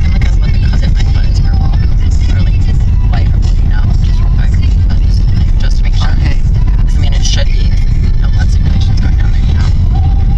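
Inside the cabin of a moving car: a loud, steady low rumble of road and engine noise, with bits of talk over it.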